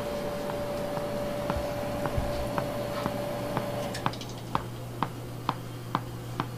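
Hand-held candy funnel depositor clicking at a steady pace of about two a second as its plunger is worked up and down, dropping wintergreen mint patties one at a time. A steady hum runs underneath and stops about four seconds in.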